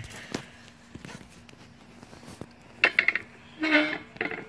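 A few light clicks and taps of a knife against a plastic cutting board while a bass is being filleted. Near the end come two short bursts of a voice.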